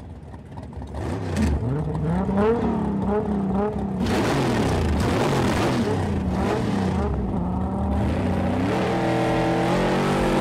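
Engines of a Dodge Charger and a Toyota Supra revving at a standing start: the revs rise and fall in quick blips, then hold high with a few dips, and climb again near the end.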